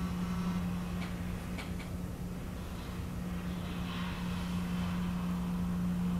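Room tone: a steady low electrical hum over a faint rumble, with a few faint clicks in the first two seconds.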